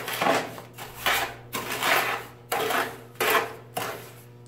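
Trowel scraping and sloshing through wet, soupy sand-and-cement mortar in a plastic tub, mixing it in about five strokes less than a second apart.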